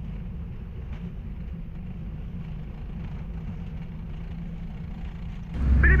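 Steady low drone of a P-8A Poseidon's cabin in flight, its twin turbofan engines heard through the fuselage. Just before the end a louder low hum cuts in as a radio transmission opens, and a man's voice begins a warning over the radio.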